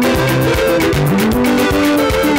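Loud, upbeat gospel dance music with a steady beat, a repeating melody line and bass notes that slide in pitch.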